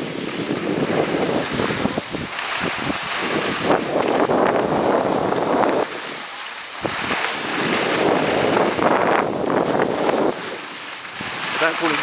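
Skis hissing and scraping over packed snow, swelling and fading with the turns, mixed with wind rushing over the microphone. The noise drops briefly twice, about six seconds in and again near the end.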